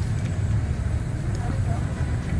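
Steady low rumble of outdoor background noise in a pause between words.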